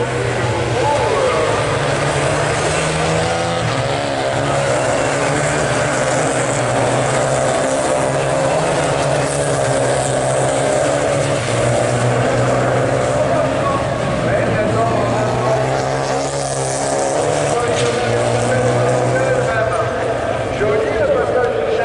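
Renault Clio race cars' engines running hard at high revs as they lap the rallycross circuit, the pitch rising and falling with gear changes.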